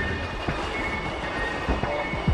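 Japanese superconducting maglev train passing along its elevated guideway: a steady rushing noise with a few irregular low thumps.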